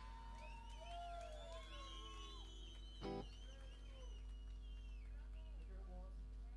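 Quiet pause between songs: a steady amplifier hum under faint, indistinct voices, with a single click about three seconds in.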